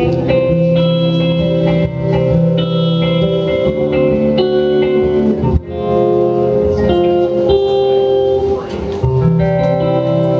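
Live rock band playing: electric guitars sounding held chords and notes over drums, with a brief drop in the sound about halfway through.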